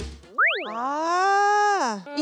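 Comic sound effect: a quick upward slide, then a long pitched tone that swells up, holds and sinks away near the end.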